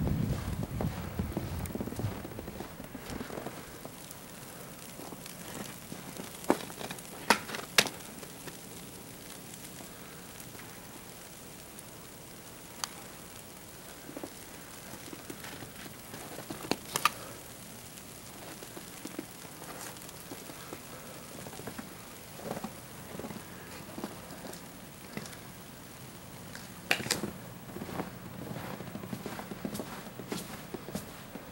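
Steady light hiss of snow coming down outdoors, with a handful of sharp ticks scattered through it and a few louder low thumps in the first couple of seconds.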